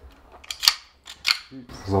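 Sharp metallic clicks of a pistol being field-stripped by hand: the trigger guard is pulled down and the slide is worked off the frame. There are three distinct clicks: about half a second in, just after, and again a little past one second.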